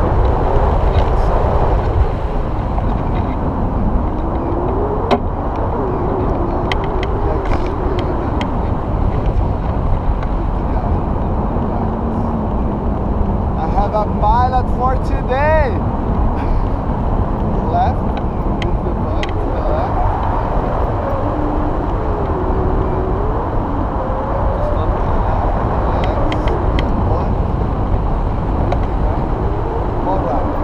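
Steady, loud wind rushing over the microphone, with faint, muffled voices under it that cannot be made out.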